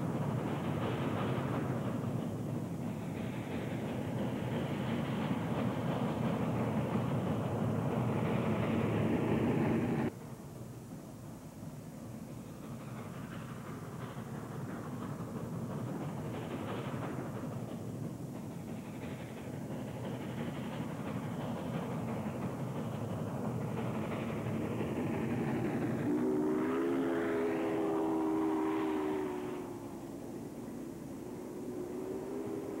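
Union Pacific steam locomotive working a heavy freight upgrade: a steady rumble of exhaust and running gear that drops suddenly in level about ten seconds in. Near the end its steam whistle blows one chord-like blast of about three seconds, sagging slightly in pitch.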